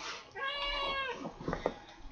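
A cat meowing once: a single drawn-out call of about a second that rises and then falls in pitch.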